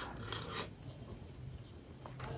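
Soft, wet chewing of a mouthful of rice and curry, with faint squishing of rice being mixed by hand on a plate.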